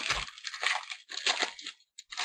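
A stack of hockey trading cards being flipped through by hand, the card edges sliding and snapping against each other in a few quick runs of soft clicks.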